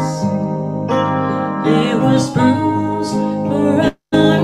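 A woman sings a worship song into a handheld microphone over instrumental accompaniment, with held, wavering notes. The sound cuts out for a split second near the end.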